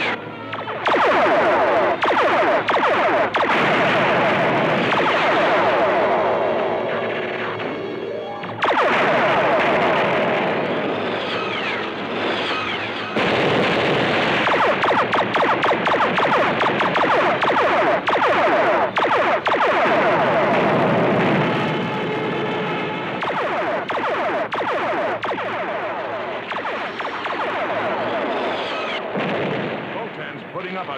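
Cartoon sky-battle soundtrack: rapid, repeated ray-gun blasts and rocket-ship effects mixed with music. They come in three loud stretches, then ease off over the last third.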